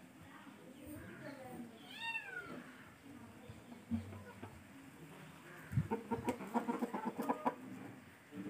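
Aseel chickens calling: one short squawk that rises and falls in pitch about two seconds in, then a quick run of clucking near the end, the loudest part.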